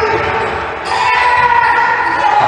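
Youth basketball game in a large echoing gym: players and spectators shouting while the ball is dribbled on the hardwood court. The voices get louder about a second in.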